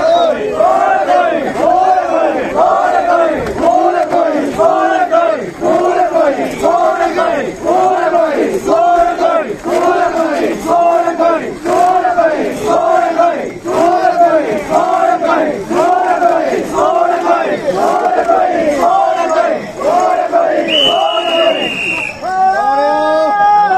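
A crowd of mikoshi bearers chanting a short call in unison, over and over, a little more than once a second. A brief steady high tone sounds near the end.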